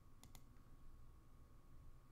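Two quick, faint clicks close together, a computer mouse being clicked, over near-silent room tone.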